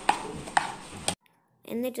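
Two sharp clicks of a utensil on a metal pot, about half a second apart, as fried banana pieces are worked into cake batter; the sound cuts off suddenly, and a woman starts speaking near the end.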